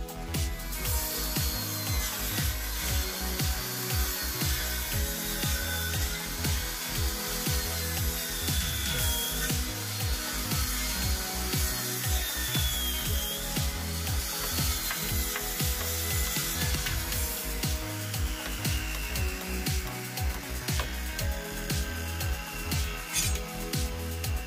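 Background music with a steady beat, over which a handheld circular saw cuts wooden roof battens, its whine wavering, for about the first two-thirds; a few sharp knocks near the end.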